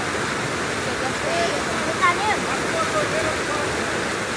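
Fast white water rushing through a concrete channel, a steady rush of noise with no breaks.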